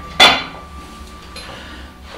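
A single sharp clink of hard objects with a brief ring, about a fifth of a second in, followed by quiet handling noise.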